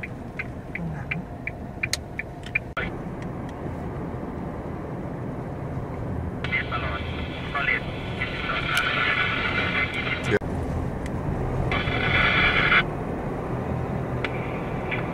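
Steady road and engine noise inside a moving car, with light ticks in the first few seconds and a voice about six seconds in and again near the end.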